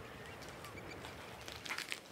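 Faint outdoor ambience with soft, distant bird calls, and a few light clicks near the end.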